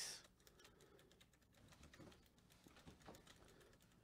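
Faint, irregular tapping of a computer keyboard in a near-silent room.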